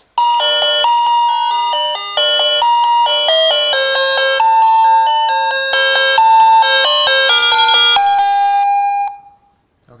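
A wireless doorbell's speaker unit playing a loud electronic chime melody, set off by an Arduino and light sensor because the box lid has just been opened. The tune steps through many short notes and ends about nine seconds in on a held note that fades out.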